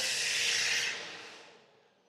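A long, breathy hiss of exhaled air, like a sigh blown near the microphone, fading away about a second and a half in.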